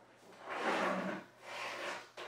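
Rustling and rubbing of a tangled coiled cable and earmuffs being pulled up off a table, in two stretches of under a second each.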